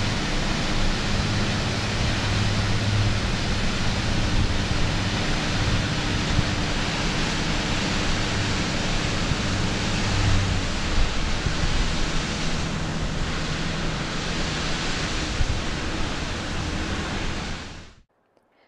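Steady rushing roar of a large waterfall, the 107-foot Middle Falls on the Genesee River, with a faint low hum underneath; it fades out at the very end.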